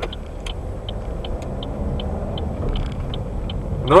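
A car's turn-signal indicator ticking about two and a half times a second over engine and road noise inside the cabin, while the engine note rises as the car pulls away.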